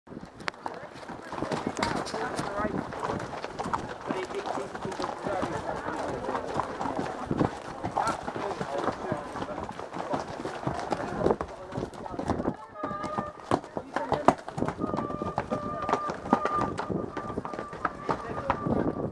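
Horses' hooves beating irregularly on a soft grass track as a group of riders moves along, the rider's own horse close to the microphone. In the last few seconds a steady high note sounds in short repeated stretches.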